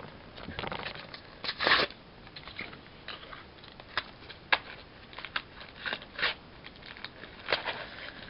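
Plastic blister packaging of a trading-card pack crackling and crinkling as it is worked open by hand, in irregular sharp crackles with a louder burst about a second and a half in.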